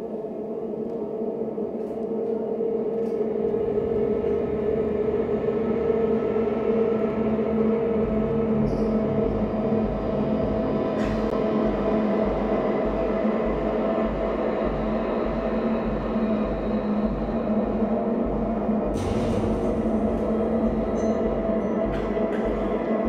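Ominous sustained drone music: steady low tones that swell over the first few seconds, with a deep pulsing throb joining about eight seconds in.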